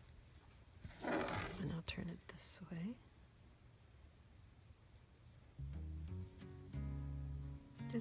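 A woman's voice without words: a breathy murmur about a second in, then a couple of steady hummed notes near the end.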